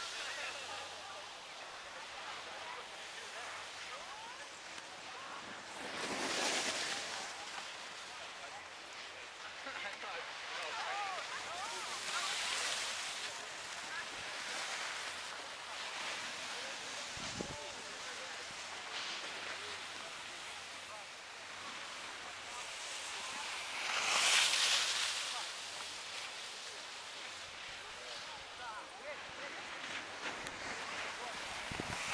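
Outdoor snow-slope ambience: distant voices of people, with three swells of hissing as something slides over the snow, about six, twelve and twenty-four seconds in. A single brief low thump a little past halfway.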